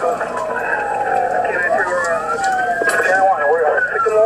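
Police sirens wailing, several overlapping tones that rise and fall slowly.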